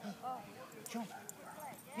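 A dog giving a string of short, faint whines and yips, each rising and falling in pitch, while excited at play.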